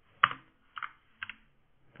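Computer keyboard typing: a few separate keystrokes, the loudest about a quarter second in.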